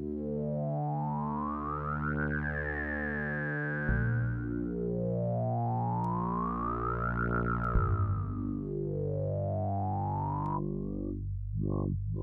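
Sampled Casio CZ synthesizer patch from the CZ Alpha Kontakt library, played as held chords on a keyboard. The tone slowly brightens and darkens in a repeating sweep, and the chord changes about four and eight seconds in.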